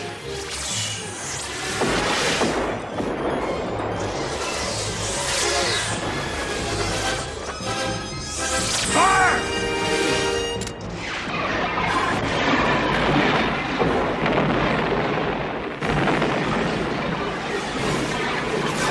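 Orchestral film score mixed with sci-fi space-battle sound effects: laser fire and booming explosions.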